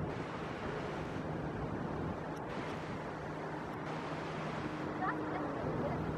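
Steady seaside outdoor ambience: a broad hiss of wind and water with a low, steady hum underneath, and faint distant voices near the end.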